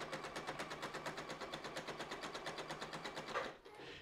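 Juki sewing machine stitching a seam at a steady speed, a rapid even clatter of about ten needle strokes a second, which stops about three and a half seconds in.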